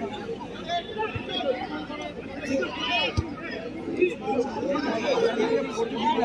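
Crowd of football spectators chattering and calling out, many voices overlapping, with a couple of short dull knocks.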